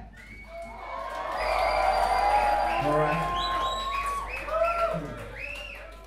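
Crowd cheering and shouting, many voices whooping over one another, as a live hip hop song ends. The cheering swells in the first two seconds and fades away near the end.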